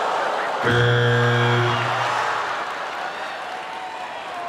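Studio audience laughing and applauding after a joke. About half a second in, a short held musical chord sounds over the crowd for about a second, and the crowd noise dies down toward the end.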